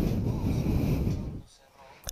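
Rustling and scraping as hands handle a cardboard and plastic product box close to the microphone, stopping about one and a half seconds in.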